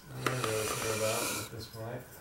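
A man's voice making a low, drawn-out breathy vocal sound without clear words, then a shorter one near the end.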